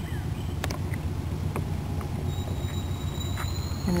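Outdoor background with a steady low rumble and a few light clicks. A faint, thin high tone comes in just past the middle and rises slightly toward the end.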